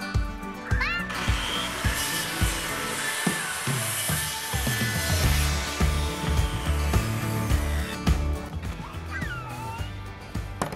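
Background music with a steady beat, over a circular saw cutting through a pressure-treated 2x2 board. The cut starts about a second in and lasts about four seconds.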